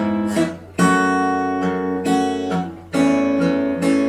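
Steel-string acoustic guitar playing fingerpicked chords that move from F#m towards A/E, each new chord attack ringing on into the next.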